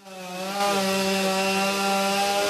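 Chainsaw running at a steady pitch, fading in over the first half second.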